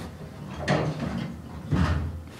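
Elevator car doors sliding shut: a swish a little under a second in, then a low thump as they meet near the end.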